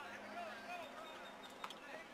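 Faint voices of people talking in the background, with one sharp knock near the end.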